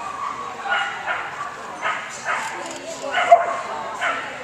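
A dog barking and yipping in short, separate calls, about five in all, the sharpest and loudest a little past three seconds in.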